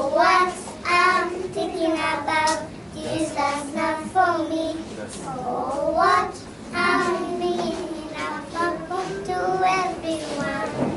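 A group of young children singing a song together in unison, the voices continuing through with short breaths between phrases.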